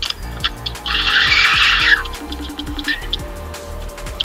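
A carp reel's clutch giving line to a hooked fish: a harsh, rasping buzz lasting about a second, heard through a phone's speaker, with faint clicking around it.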